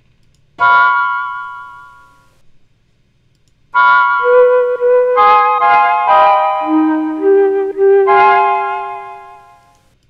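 Software Mellotron played in chords from a pad controller, its notes held in one key by Scaler 2's key lock. A single chord comes about half a second in and fades over two seconds. From about four seconds in a run of overlapping chords and held notes follows, fading out near the end.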